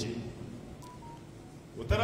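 Two short electronic beeps about a second in, the second a little lower in pitch than the first, in a pause in a man's speech, followed by a low thump just before the voice resumes.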